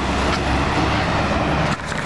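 City bus and road traffic going by, a steady rumble of engine and tyre noise that drops away near the end.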